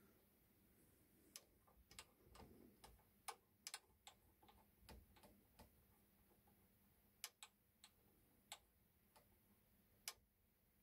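Faint, irregular small metal clicks and ticks from the fittings and knurled thumbscrews of a vintage Stanley No.55 combination plane as they are handled and adjusted. The clicks come in two loose clusters.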